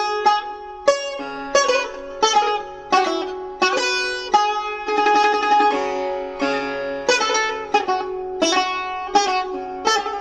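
Iranian classical music: a pishdaramad (composed prelude) in the Dashti mode played on string instruments, a quick melody of sharply attacked notes that ring on.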